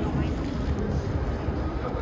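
Outdoor street ambience: a steady hum of traffic with indistinct voices of passers-by and some wind on the microphone.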